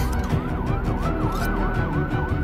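Siren yelping, its pitch sweeping rapidly up and down about three times a second, mixed over dark soundtrack music.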